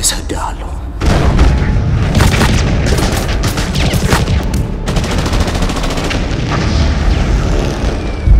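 Battle sound effects: explosions and gunfire start suddenly about a second in, with a fast burst of automatic rifle fire around the middle.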